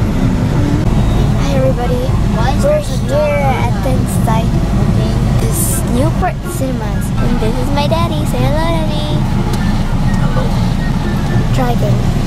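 Steady low rumble of a vehicle's engine and running gear heard from inside the cabin as it creeps forward, with voices talking over it.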